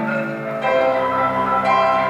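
Concert marimba playing sustained, bell-like notes. About half a second in, a fuller chord with deep bass notes comes in and rings on.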